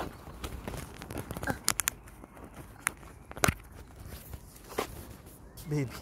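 Footsteps on pavement with the rustle of a hand-held phone being carried, broken by a few sharp clicks.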